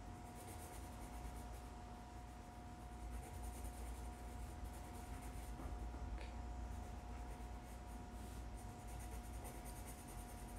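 Pencil sketching on a sketchbook page, a faint continuous scratching of graphite on paper, over a steady electrical hum.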